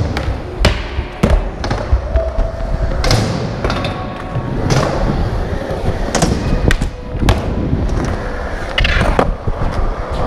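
Skateboard wheels rolling over a concrete floor and wooden ramps, with repeated sharp clacks and knocks of the board hitting and landing, over background music.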